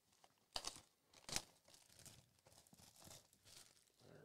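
Plastic shrink wrap on a trading-card hobby box crinkling and tearing faintly as the box is handled. It comes as a string of short crackles, the two loudest about half a second and a second and a half in.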